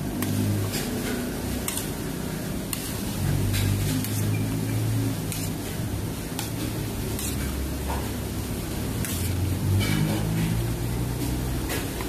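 A spatula stirring a thick, creamy sauce in a pan, with irregular soft clicks and scrapes as it drags through the sauce and touches the pan, over a steady low rumble.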